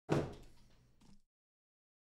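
Cardboard boxes set down on a table with a sudden thud that fades over about a second, then a lighter knock about a second in.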